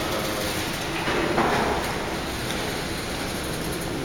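A steady low rumble and hiss of background noise, with a louder patch of hiss from about a second in to about two seconds in.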